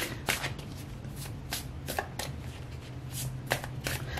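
A tarot deck being shuffled by hand: a run of irregular sharp card snaps and riffles over a low steady hum.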